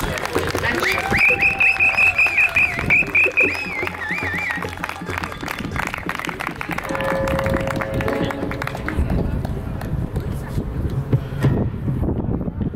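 Acoustic guitar and a man's voice into a microphone, with a loud high warbling vocal line in the first few seconds. The music then gives way to quieter voices and outdoor noise.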